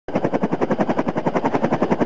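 Helicopter main rotor running close by: a loud, steady, rapid chop of about ten beats a second.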